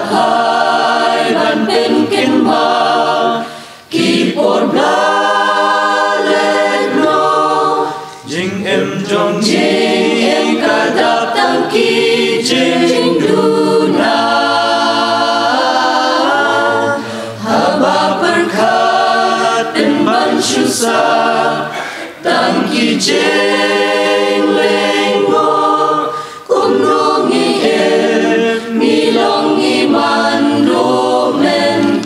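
Mixed choir of women and men singing a hymn, in long phrases broken by short pauses for breath.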